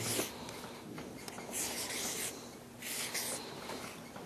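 Marker pen drawing on a paper flip chart: about three short scratchy strokes, each under a second long.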